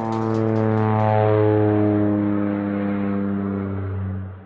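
A live rock band's final chord held and ringing out: one steady sustained chord from amplified guitars and bass that slowly fades, with no drums.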